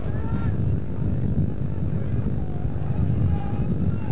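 A low, fluctuating rumble of noise with faint voices calling in the distance.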